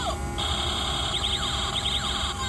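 Toy gatling-style bubble gun's built-in electronic sound effect playing, a siren-like alarm: a falling zap at the start, then a steady high tone with fast pulsing beeps.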